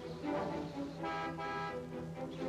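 Bus horn sounding once about a second in, a steady note lasting under a second: the second horn signal the waiting men expect, meaning the bus has come. Film score music plays underneath.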